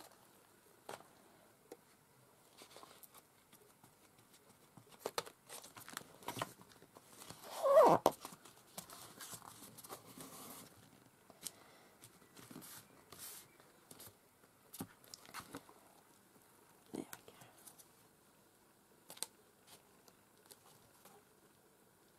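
Glued paper being handled in a handmade journal: scattered soft rustling, crinkling and light taps, with one louder sound about eight seconds in as the paper is pressed and the book folded to crease it.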